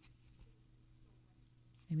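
Faint rustle of paper tarot cards being handled and slid across a cloth-covered table, with a soft brush of sound about halfway through.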